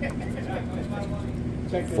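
A pencil scraping the coating off a scratch-off lottery ticket, faint against a steady low hum.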